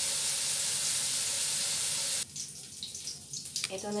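Chicken fat sizzling steadily in a nonstick wok as it renders out its own oil, cutting off abruptly a little after two seconds in, after which a much fainter sizzle remains.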